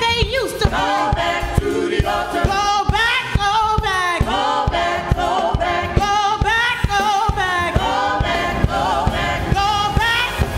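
Gospel praise team singing together, backed by keyboard and drums keeping a steady beat.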